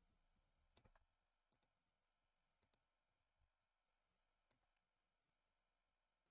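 Near silence with a few faint computer mouse clicks, some in quick pairs, the loudest about a second in.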